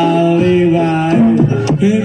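Live Javanese accompaniment music for a Barongan performance: a melody of long held notes that step up and down in pitch over the ensemble, with a drum stroke near the end.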